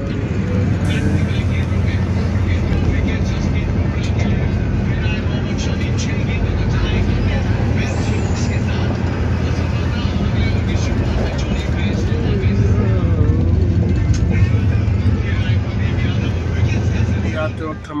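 Steady low rumble and hum inside a Shatabdi Express chair-car coach, with passengers' voices over it.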